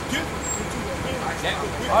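City transit bus pulling up to a stop, its diesel engine running with a steady low rumble under street chatter.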